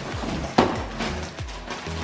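Clear plastic packaging bag crinkling and rustling as it is handled, with one knock about half a second in, over background music.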